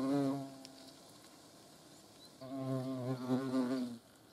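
European hornets flying at a nest-box entrance, their wingbeats a low, pitched buzz. One buzz fades out about half a second in; a second starts a little over two seconds in and runs on, wavering slightly in pitch.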